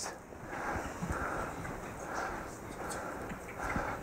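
Quiet room tone in a pause between spoken lines, with a few faint, soft sounds from the room.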